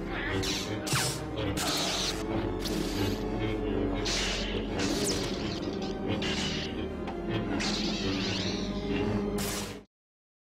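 Film soundtrack of a lightsaber duel: orchestral score under lightsaber hums with repeated swings and clashes. The sound cuts off suddenly just before the end.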